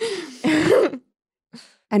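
A person's breathy, throaty vocal sound lasting about a second, its pitch dipping and rising, followed by a short pause and a faint breath before talking resumes.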